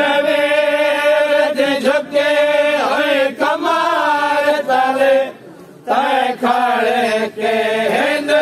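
A group of men chanting a noha, a Shia lament, unaccompanied and in long held lines, with a short pause for breath about five and a half seconds in.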